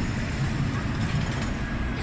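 Amusement ride machinery running, a steady low rumble with a faint even noise above it.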